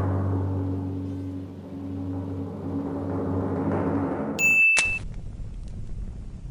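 Intro sound design under a logo animation: a deep, sustained low chord ringing on after a hit. About four and a half seconds in, a short high-pitched tone and a sharp click cut it off, leaving a faint hiss.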